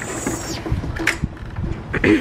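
Glass patio door sliding open with a short hiss, followed by a few sharp clicks and low knocks as it is handled and stepped through, with low wind rumble on the microphone.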